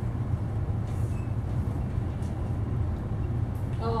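Steady low rumble of room background noise during a pause in speech, with a few faint rustles.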